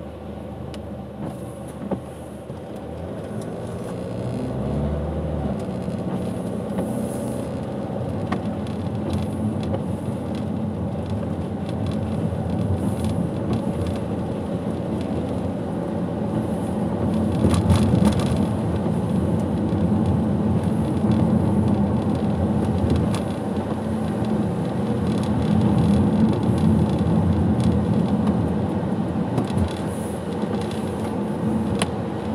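A car sitting with its engine running, then pulling away about four seconds in and driving on a wet road. The engine and the tyre noise on the wet tarmac build up steadily as it gathers speed.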